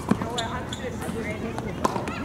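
Tennis ball bouncing on a hard court: sharp single impacts right at the start, again a moment later and once more near the end, with faint voices in the background.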